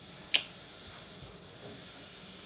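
A single sharp kiss smack, lips on a baby's head, about a third of a second in.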